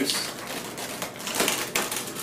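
Newspaper crackling and rustling as a hand lifts a loose layer of paper mache, a second layer that has not stuck to the dried layer beneath. The crackle is louder about a second and a half in.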